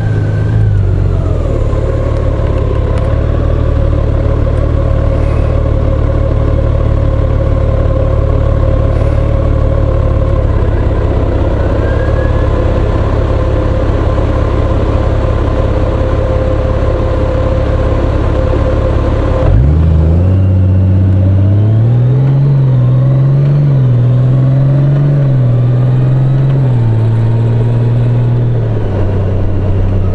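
Large touring motorcycle engine idling steadily while the bike stands at a junction. About 20 seconds in it pulls away, its pitch rising and dropping in steps as it accelerates through the gears.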